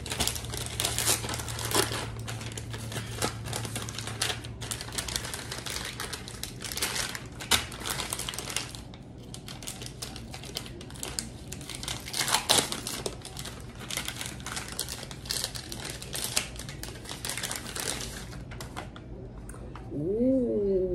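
Plastic wrapper of a refrigerated cookie dough package crinkling and crackling as it is pulled open and handled, a dense run of irregular crackles with a few louder ones.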